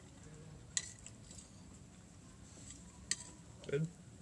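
Quiet room tone broken by two brief, sharp clinks of cutlery against dishes at a meal, one just under a second in and one about three seconds in.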